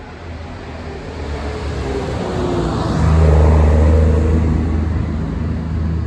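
Farm tractor passing close by, really loud: its engine hum builds to a peak about halfway through, then eases off a little.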